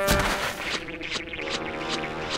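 A cartoon thud as a character falls flat on its back, then background music with held notes.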